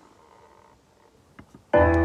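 Low room sound with a couple of soft clicks, then near the end a recorded song starts suddenly on its opening downbeat: a full piano chord over a deep bass note that rings on.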